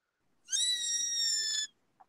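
A child's high-pitched squeal coming through an unmuted participant's microphone: one held note of just over a second, rising briefly at the start and then falling slightly.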